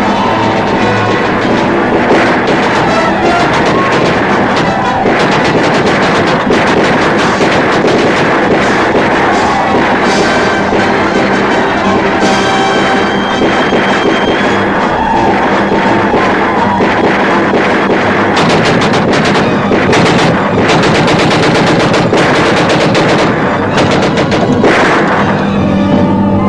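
Rapid, continuous gunfire from a Gatling gun, mixed with film score music.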